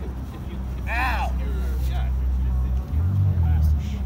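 Low steady drone of city traffic, an engine hum that shifts up briefly about three seconds in, with a short raised voice call about a second in.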